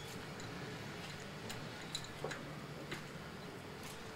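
A few sharp, irregular clicks and taps, about half a dozen spread over four seconds, from hand work at a workbench, over a faint steady low hum.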